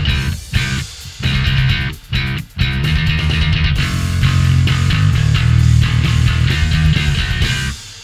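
Electric bass guitar played through a Joyo Double Thruster bass overdrive pedal set for a clanky, gritty tone. It plays a riff broken by short stops, and near the end the last note dies away.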